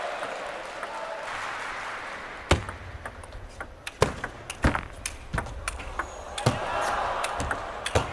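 Table tennis rally: a celluloid ball clicks sharply off the rackets and the table, a quick string of hits about every half second to a second, starting a couple of seconds in. Before the rally, a hall crowd's noise fades down, and it swells again near the end.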